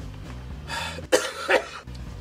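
A young man coughing and clearing his throat in short bursts, the two sharpest about a second in and half a second apart, over quiet background music.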